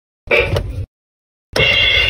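Toy electronic drum pad kit playing its built-in drum sounds as its pads are struck with a finger: a short hit about a quarter second in, then a longer one about a second and a half in. Each starts and cuts off abruptly.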